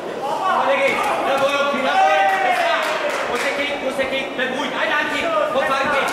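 Several men's voices shouting and calling out at once during a kickboxing bout, some calls held long, with a few faint sharp smacks of strikes landing.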